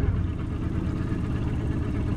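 Outboard motor running steadily at low trolling speed.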